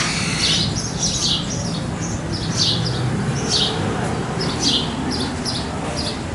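Birds chirping: short high chirps about twice a second, over a steady low rumble.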